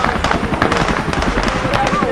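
Fireworks packed inside a stuffed toy tiger going off: rapid, continuous crackling and popping of firecrackers.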